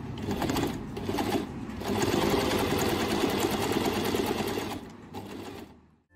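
Janome 393 electric sewing machine stitching a straight seam: two short runs, then a steady run of about three seconds that trails off and fades out near the end.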